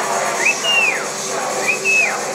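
A person whistling a wolf whistle twice: each is a short upward slide and then a long high note that falls steeply. Both stand out over a steady din of club noise.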